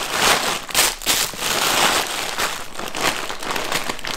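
Thin clear plastic bag crinkling and rustling as it is handled, in an uneven run of crackles.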